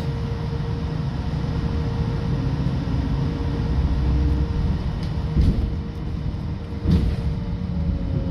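Trolleybus in motion, heard from inside: a steady low rumble with a constant electric whine, broken by two sharp knocks about five and a half and seven seconds in.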